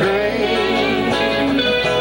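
A live rock band playing an instrumental passage, guitars to the fore with a sustained lead line bending in pitch.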